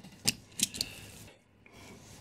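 A few light clicks and knocks from a brass clock movement being handled and set down on a mat, with a faint brief metallic ring after one click.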